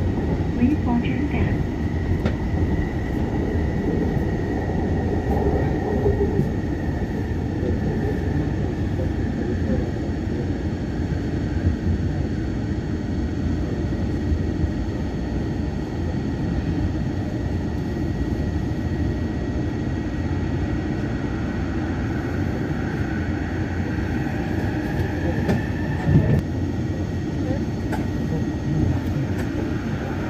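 Yongin EverLine light-metro train running, heard from inside the car: a steady rumble under a thin high whine. It slows into a station, then the whine rises in pitch as the train pulls away near the end, with a single short knock late on.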